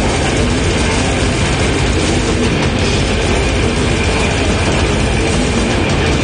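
Death metal band playing live: heavily distorted electric guitars over very fast, dense drumming, the whole mix loud and unbroken.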